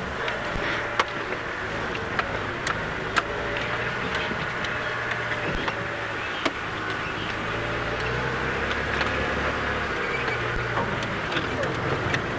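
Open safari game-drive vehicle driving slowly over a bumpy dirt track: a steady low engine hum with scattered short knocks and rattles from the vehicle.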